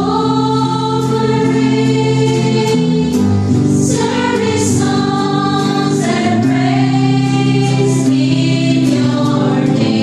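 An amateur choir of mostly women's voices singing a worship offertory song in unison, the line "offering service songs and praise in your name", in sustained notes to electric and acoustic guitar accompaniment.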